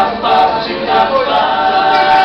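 Vocal jazz ensemble singing a cappella, several voices holding chords in harmony that shift about every half second.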